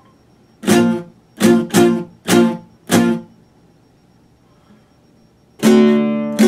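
Classical guitar strummed in separate chords: five strokes in the first three seconds, a pause, then another chord about five and a half seconds in that rings on.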